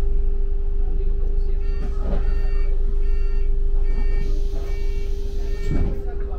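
London double-decker bus running, with a steady low rumble and a steady whine. From about two seconds in, clusters of short, high electronic beeps repeat until near the end.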